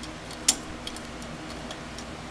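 A single sharp metallic click about half a second in, with a few faint ticks around it, from a socket wrench working on a cylinder head bolt.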